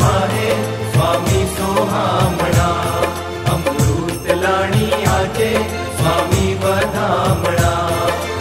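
Instrumental interlude of a Gujarati Swaminarayan devotional bhajan: a melody over a steady low drone, with regular drum strokes keeping the beat.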